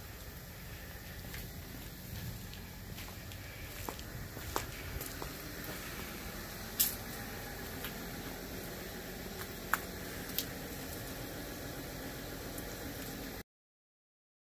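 Steady outdoor background noise with a few faint, sharp clicks scattered through it, cutting off abruptly to silence near the end.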